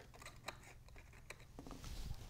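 Faint handling of a cardstock papercraft: a few soft clicks and light rustles as the paper pieces are pressed down into place by hand.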